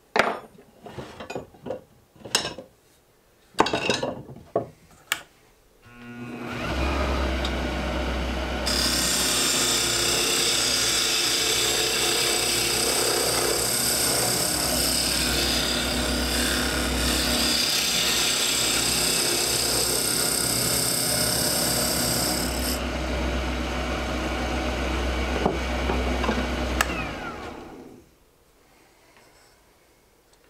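A few knocks and clunks as the wood lathe's tool rest is worked on, then the lathe starts about six seconds in and runs with a steady low hum. For about fourteen seconds a hand turning tool cuts the spinning hardwood duck-call blank with a loud hiss, before the lathe stops near the end.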